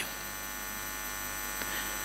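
Steady electrical mains hum with many constant tones and a faint hiss, picked up on the microphone line while nobody speaks.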